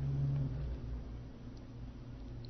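A pause in speech, leaving a low steady hum with faint hiss from the recording. A faint low tone trails off in the first half second.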